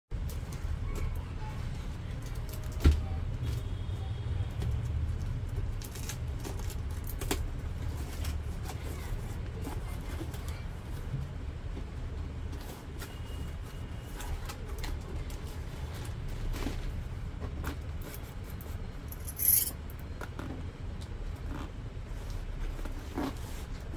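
Cardboard shipping box being handled and opened by hand: scattered scrapes and taps of cardboard, a sharp knock about three seconds in, and a short rip near the end, over a steady low rumble.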